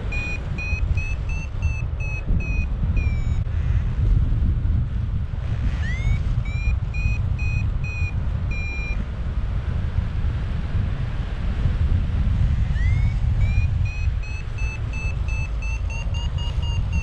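Paragliding variometer beeping in three runs of short beeps, about two a second, the later runs each opening with a rising chirp: the climb tone that signals lift. Wind rumbles on the microphone throughout.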